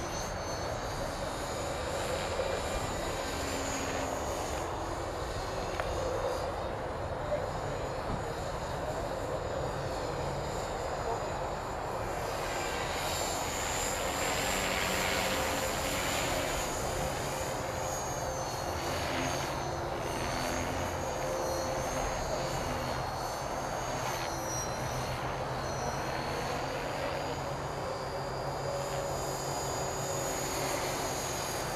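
450-size electric RC helicopter in flight: a high whine from its motor and gears that wavers up and down in pitch as the headspeed changes, over the whirr of the rotor blades. The sound swells for a few seconds around the middle.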